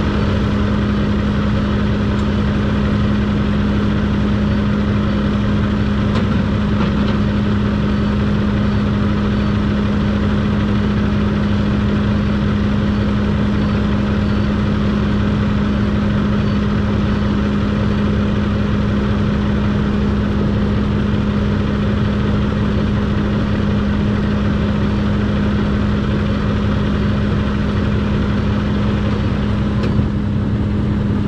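Diesel truck engine idling steadily, with a constant low hum that holds level throughout.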